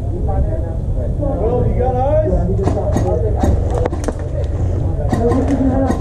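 Indistinct voices, broken in the middle by a string of about eight sharp cracks over two or three seconds, typical of airsoft guns firing close by. A steady low rumble runs underneath.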